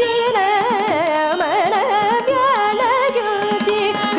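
Carnatic vocal music: a woman's voice sings a phrase full of wavering, gliding ornaments (gamakas), shadowed by a violin, over a steady tambura drone and mridangam strokes.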